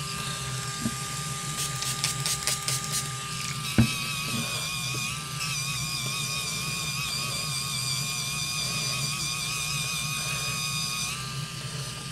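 Battery-powered spinning facial cleansing brush running with a steady, high motor whine as it is worked over the forehead and along the hairline. Its pitch wavers about five seconds in and it stops shortly before the end. A single click about four seconds in.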